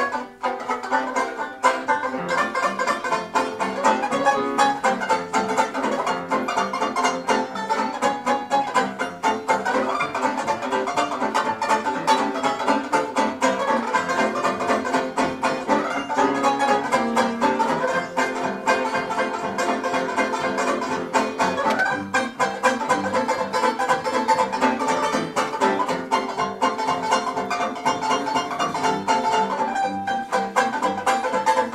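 Tenor banjo and grand piano playing a 1920s popular tune as a duet, the banjo plucked with rapid, dense notes over the piano.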